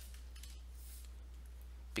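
Quiet pause with a steady low electrical hum and faint hiss, and a faint scratch of noise about half a second in.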